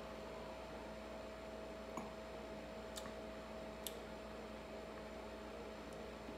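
Steady low room hum with a few faint clicks about two, three and four seconds in.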